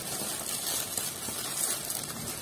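Rustling and crinkling of a package's wrapping as it is handled and opened.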